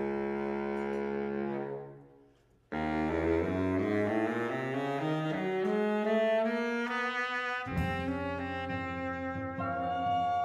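Baritone saxophone playing a slow jazz ballad melody over double bass and drums. A held chord fades out about two seconds in and the sound drops out briefly. The saxophone then comes back with a rising line, and the bass and drums come in more strongly near the end.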